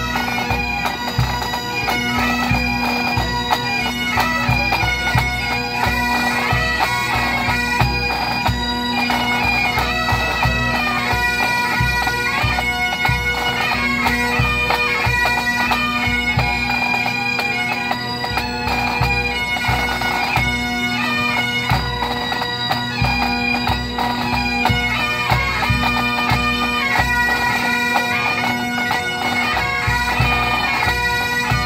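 A pipe band of Great Highland bagpipes and drums playing a quick march medley: steady drones under the chanter melody, with the drum corps beating time on bass and snare drums.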